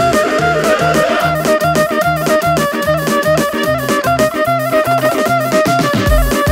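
Lively dance music with a fast, steady drum beat under a melody that steps between held notes.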